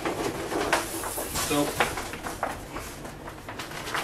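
A large sheet of plastic laminating film rustling and crackling as it is rolled up by hand.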